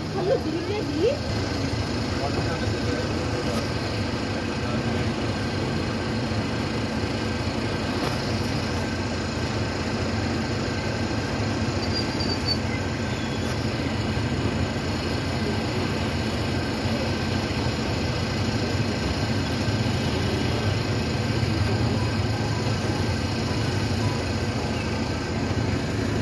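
Steady engine and road noise of a bus heard inside its passenger cabin, with faint voices among the passengers.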